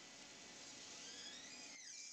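Near silence: faint room tone, with a few faint high sliding tones in the second half.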